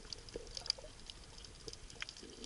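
Faint underwater sound of water over a shallow coral reef: scattered, irregular small clicks and crackles over a low hiss.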